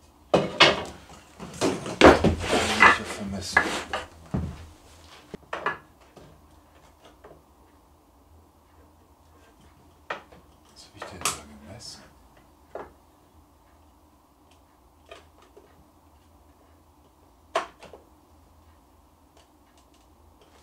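Wooden pieces and hand tools being handled on the saw table and workbench: a quick run of knocks and clatter in the first few seconds, then a few single sharp clicks and taps.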